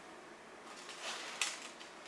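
A steel tape measure handled against a wooden frame: a brief scraping rustle that ends in one sharp click about midway, then a few faint ticks.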